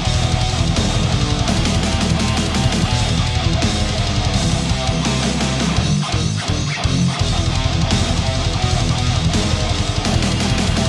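Instrumental heavy metal: electric guitar riffing over bass guitar. About six seconds in, the low end drops out for about a second in a short break before the full band comes back.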